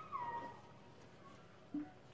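A short, high-pitched animal call near the start, about half a second long, rising and then falling in pitch.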